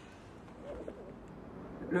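Quiet outdoor ambience with a faint, low bird cooing a little after half a second in; a man starts to speak at the very end.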